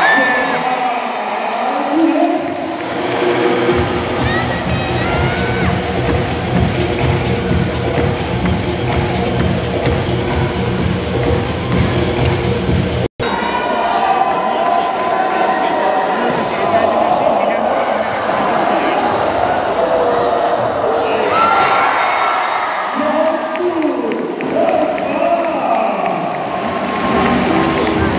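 Indoor volleyball arena crowd cheering and chanting, with music playing over the hall's sound system. The sound cuts out for an instant about halfway through, then the crowd noise and music pick up again.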